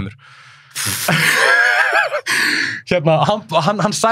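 A man's loud, breathy gasp with his voice wavering through it, lasting about a second and a half, followed by talk.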